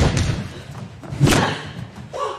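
Heavy thuds of hand-to-hand sparring: a sharp hit at the start, then a louder impact just over a second in.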